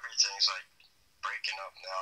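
A person speaking in short phrases, the voice thin and tinny as if heard over a telephone line.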